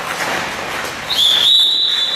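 A whistle blown in one steady, shrill high note that starts about a second in and is still sounding at the end, the loudest sound here. Before it, the scrape of skates on the ice.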